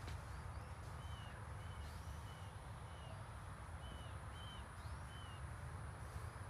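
Small birds chirping, a string of short repeated notes about every half second with a few higher swooping calls, over a steady low rumble.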